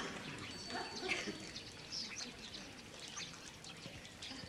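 Faint birdsong: scattered short, high chirps and a thin whistle near the start.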